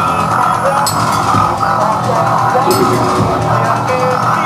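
A band playing live and loud: a drum kit with cymbal crashes about a second in and again near three seconds, and keyboard and electric guitar lines over a steady low drone.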